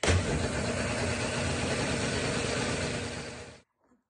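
Countertop blender motor running on a batch of cheese-bread batter, starting abruptly and cutting off suddenly about three and a half seconds in.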